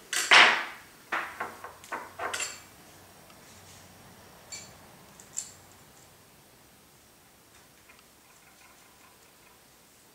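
Small RC helicopter being handled and turned over on a wooden tabletop. There is a clatter just at the start, a quick run of sharp plastic-and-metal clicks over the next two seconds, two light ticks around the middle, then only faint handling.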